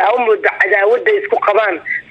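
Speech only: a voice talking in Somali without pause, with a narrow, phone-line-like sound.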